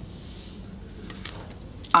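Faint steady room hiss with no distinct event, then a woman's voice starts speaking right at the end.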